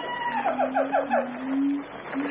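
Bornean gibbons calling in chorus: a long, steady whistled note, then a quick run of about five short notes, over a lower held note.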